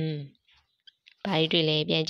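A woman's or man's voice speaking in two short stretches, one at the very start and a longer one from just past a second in; only speech.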